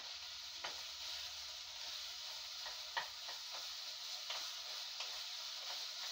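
Food sizzling steadily as it fries in a deep frying pan, with a few faint ticks and pops.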